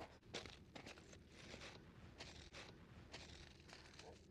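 Faint, irregular crunching footsteps on loose rock and gravel as someone picks their way down a rocky slope.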